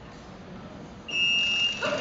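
An electronic buzzer gives a single steady high beep about a second in, strong for about half a second and then fading, over the low background of a competition hall.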